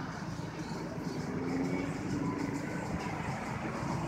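Distant military jet aircraft flying overhead: a steady engine rumble with a faint low hum that swells slightly midway.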